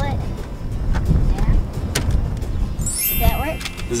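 Tilt steering column being adjusted: a couple of light clicks about a second and two seconds in, over a low rumble, with a short voice near the end.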